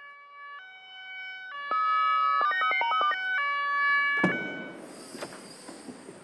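Ambulance siren sounding as the vehicle approaches: steady tones that alternate between pitches, switching quickly in the middle. It breaks off suddenly about four seconds in, replaced by a rushing noise and a few knocks.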